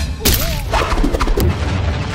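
Dubbed fight-scene sound effects: a heavy kick impact about a quarter second in, then a few lighter hits, over background music.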